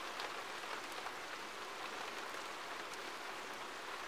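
Faint, steady rain falling, with scattered small drop ticks.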